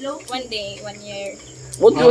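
Insects calling in a steady, unbroken high-pitched drone, under soft talking. A loud voice comes back near the end.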